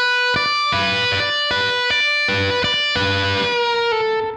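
Electric guitar playing a slow blues double-stop lick: a half-step bend on the B string is held up to a B while the high E string is plucked again and again above it, about two notes a second. The held bent note drops slightly in pitch near the end.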